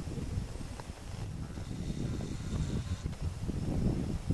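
Muffled hoofbeats of a horse loping on arena sand, under a low, uneven rumble of wind on the microphone.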